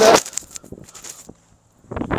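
Footsteps on dry grass and leaves, a few irregular steps in the first second or so, after the tail end of a spoken word at the very start.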